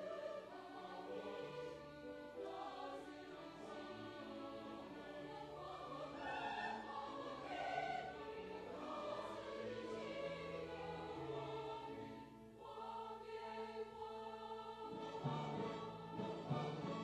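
Mixed church choir singing an anthem in sustained, held chords, with instrumental accompaniment. About three-quarters through the singing briefly dips, and then low accompaniment notes come forward.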